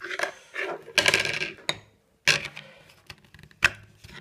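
Rubbing and scraping as a knife sheath is handled against clothing close to the phone, in several short bursts, with one sharp click near the end.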